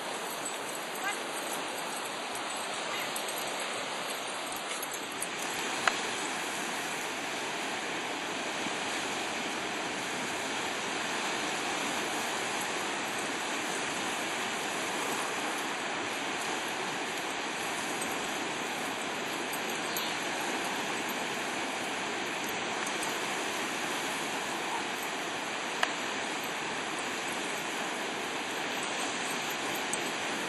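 Steady rushing noise of small waves breaking and washing on a sandy shore.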